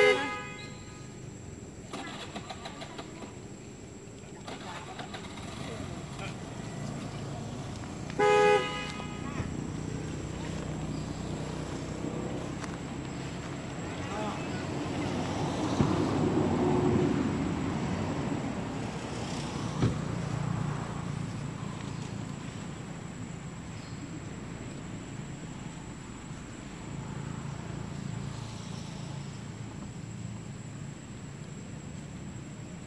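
Vehicle horn beeping briefly twice, once at the start and again about eight seconds in, over a steady background of road traffic that swells as a vehicle passes in the middle.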